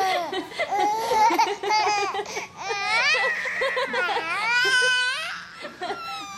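Baby laughing and squealing, with a stretch of long, high-pitched squeals that rise and fall in the middle.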